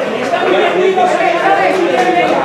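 Several spectators talking over each other close by, an unbroken chatter of voices.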